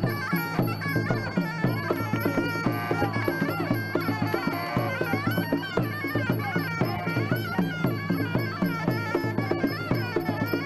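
Traditional Muay Thai fight music (sarama): a wavering, reedy pi java melody over a steady drum beat, played through the round.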